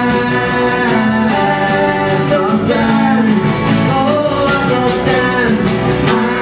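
Live acoustic folk music: acoustic guitars strummed in a steady rhythm under male singing.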